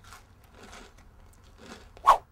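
Faint, irregular crunching of someone munching food, a few soft crisp crunches spread over the two seconds.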